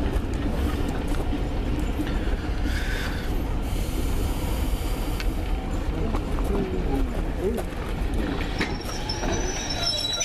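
Loaded passenger coaches rolling past on the track, their wheels and bogies giving a steady low rumble. Near the end, a thin high wheel squeal comes in.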